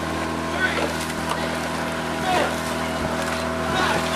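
Coaching launch's outboard motor running steadily at speed, with wind and water noise. A voice calls out faintly twice, about halfway through and near the end.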